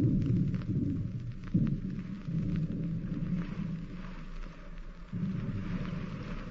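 Radio-drama sound effect of the submarine going down in the water: a low, rumbling, rushing noise that surges up sharply twice, about a second and a half in and again near the end.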